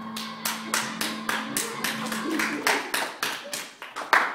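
Steady rhythmic hand clapping, about four to five sharp claps a second, stopping just before the end.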